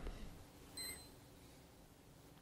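A single short, high-pitched beep a little under a second in, over quiet room tone.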